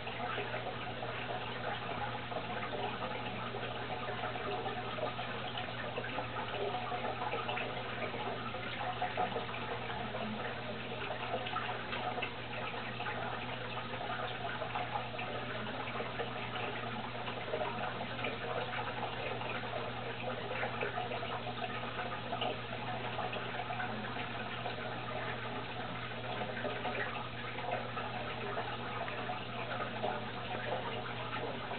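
Steady bubbling and trickling of water in a running aquarium, with fine little splashes over a low, even hum from the tank's filter or air pump.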